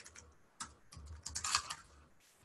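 Typing on a computer keyboard: a quick run of key clicks starting about half a second in and stopping just before the end.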